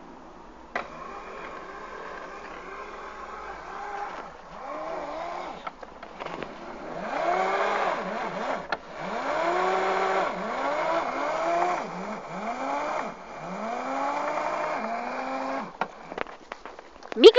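Razor 24V electric mini moto's motor whining in repeated bursts as the throttle is blipped, its pitch rising and falling about once a second over a steady hiss. A click about a second in starts the sound, and another near the end stops it.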